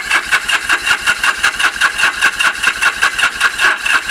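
1976 Kawasaki KZ750 parallel-twin engine being cranked over in a steady, rapid rhythm of about five pulses a second without starting. The engine is not firing because the ignition is giving no spark.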